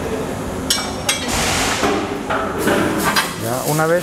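Hammer striking steel chassis tubing and jig fixtures, metal on metal. Two sharp ringing blows come about a second in, and a few more near the end.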